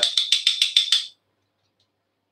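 A metal garlic press rattling and clicking as it is jiggled in the hand, a quick even run of about seven clicks a second with a thin high ring through it. It cuts off suddenly a little over a second in.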